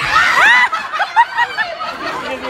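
People laughing: a high squealing laugh about half a second in, then short quick laughs.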